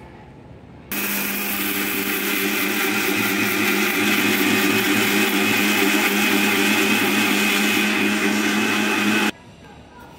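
Maharana mixer grinder's motor running at full speed, grinding coarse granulated sugar into powdered sugar in its steel jar. It starts about a second in, runs as a steady whine that grows a little louder, and cuts off abruptly near the end.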